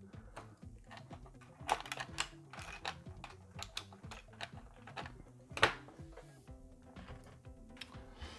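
Irregular small clicks and taps of tiny metal and plastic model-kit parts being handled and picked out of a clear plastic blister tray, with a few sharper knocks. Faint background music underneath.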